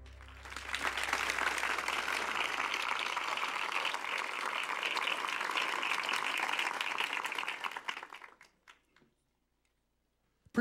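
Audience applauding: a dense patter of many hands clapping that starts about half a second in, holds steady for about seven seconds, then thins to scattered claps and stops.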